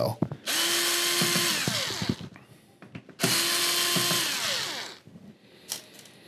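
Electric screw gun backing out screws that hold down the TV's metal plating. It makes two runs of about two seconds each, a steady whine that falls away as the motor stops, with a few small clicks between the runs.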